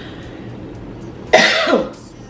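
A woman coughs once, a short sharp cough about a second and a half in, over otherwise low room tone.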